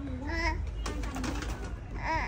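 A young child briefly babbling or cooing, followed by a few light clicks.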